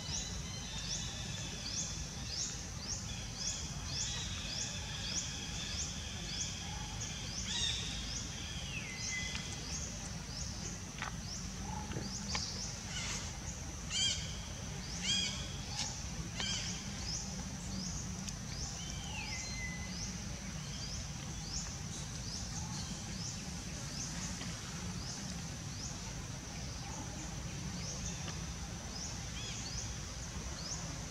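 Insect chirping outdoors: a high chirp repeats steadily, about two to three times a second. Near the middle come a few short, higher animal calls, two of them sliding down in a falling whistle. Under it all runs a low, steady rumble.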